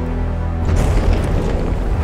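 Film score music over a heavy, sustained low boom, with a burst of noise just under a second in.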